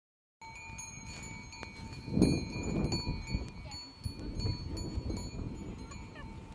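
Bells on a pair of working bullocks jingling irregularly as the team walks, pulling a wooden plough, over a low rumbling noise that is loudest about two seconds in.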